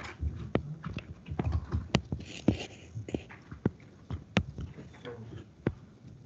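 Stylus tapping and clicking on a drawing tablet while handwriting, in sharp, irregular taps a few times a second.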